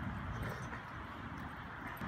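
Two dogs play-boxing on their hind legs, with paws scuffling and shuffling on bare dirt, over a steady outdoor noise bed.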